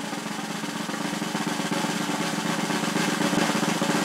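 Snare drum roll, very rapid even strokes, growing steadily louder.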